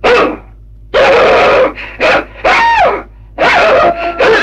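A man imitating a dog's barking through cupped hands: about five loud barks and yelps, one near the middle sliding down in pitch.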